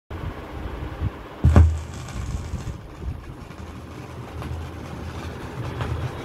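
Turntable stylus lowered onto a spinning 7-inch Odeon EP vinyl record: a thump about a second and a half in as the needle lands, then low rumble and occasional clicks from the lead-in groove.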